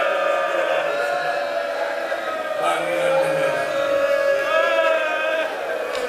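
Men's voices in a mournful chant and lament, several voices holding long, slowly wavering notes together.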